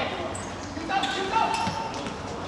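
Men's voices calling out on a football pitch, with a few dull thuds of a football being kicked.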